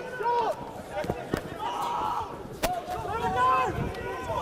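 Rugby players shouting short calls over a ruck, with a few sharp knocks in between.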